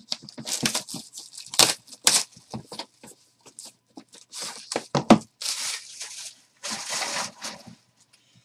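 Plastic shrink wrap being torn and peeled off a sealed trading-card box, in a series of crinkling rips with a sharp snap about five seconds in.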